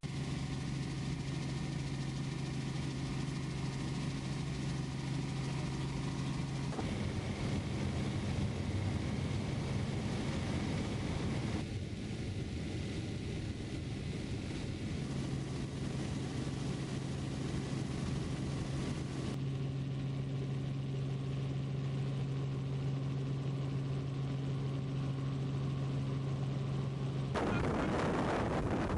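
Helicopter engine and rotor noise heard from inside the cabin: a steady low hum at a constant pitch over a rushing bed, with abrupt jumps in tone a few times. Near the end it gives way to a louder, rushing wind-like noise.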